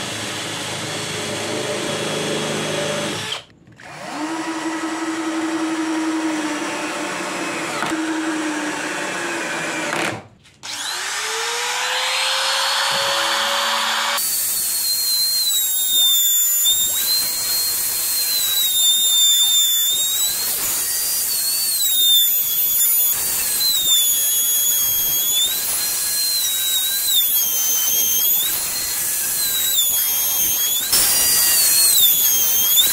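A cordless drill driving screws into birch plywood in short runs. From about a third of the way in, a trim router cuts a slot in the plywood with a high-pitched whine that dips and recovers again and again as the bit takes load.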